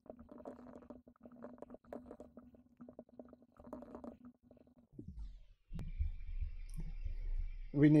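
Computer keyboard typing: quick, irregular key clicks over a faint steady hum. About five seconds in the clicking stops and a low rumble takes over, and a man's voice starts just at the end.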